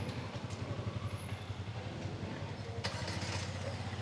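A Hyundai Tucson 1.6 turbo petrol engine started by the key fob's remote start and running at idle: a low steady hum, with a short sharp sound about three seconds in.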